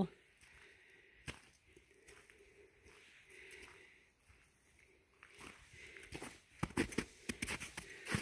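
Footsteps crunching on snow, a run of short steps starting about five seconds in after a few near-quiet seconds.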